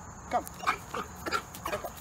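Belgian Malinois giving a run of about five short, high-pitched whines or yips, roughly three a second, the eager vocalising of a driven working dog during obedience work.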